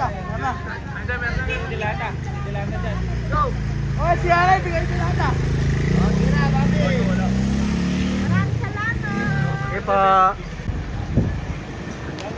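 A motor vehicle engine running under people's voices. Its note rises over a few seconds and then drops away about eight seconds in.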